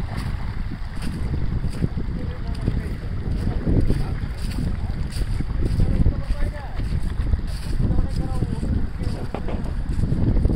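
Wind buffeting a phone microphone in gusts, over the rush of water from a breached canal flowing through a farm field.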